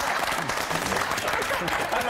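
A group of people laughing hard and clapping their hands together, a dense, steady burst of clapping mixed with laughter.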